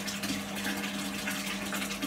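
Bath tap running into a filling bathtub: a steady rush of water, loud enough to cover a voice. A steady low hum from a bathroom extractor fan runs underneath.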